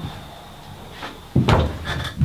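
A person sitting down heavily in a swivel office chair at a wooden desk: a loud thump with knocks about a second and a half in, then a smaller one just before the end.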